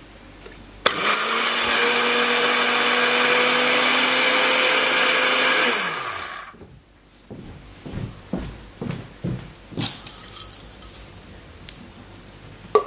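Countertop blender with a glass jar grinding granola into crumbs. It starts about a second in, runs steadily at one pitch for about five seconds, then spins down with falling pitch. Afterwards comes a series of light knocks and taps.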